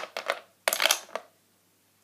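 Small plastic make-up items, a lip gloss tube among them, clicking and clattering against each other and the plastic drawer organizer as they are handled: a sharp click, a few lighter clicks, then a short dense rattle just after half a second in.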